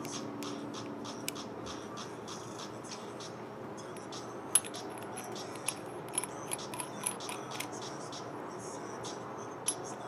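Small metal parts of a mechanical vape mod being handled: light clicks, ticks and scrapes as the bottom cap and tube are turned in the fingers, with a sharper click about four and a half seconds in, a run of clicks in the middle and another near the end.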